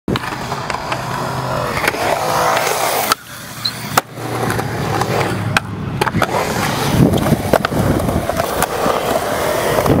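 Skateboard wheels rolling over concrete, with several sharp clacks of the board through the stretch and a short quieter gap a little after three seconds.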